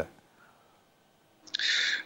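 Near silence for about a second and a half, then near the end a short hiss as a man's voice starts up over a remote video-call line.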